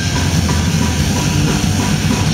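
Hardcore band playing live: fast, dense drumming under distorted guitars, loud and unbroken.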